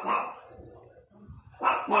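A dog barks once, short and loud, right at the start.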